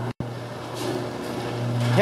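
Garage door opener running as the overhead door travels down its tracks, a steady low hum with rolling noise that grows louder through the second half. The sound cuts out briefly just after the start.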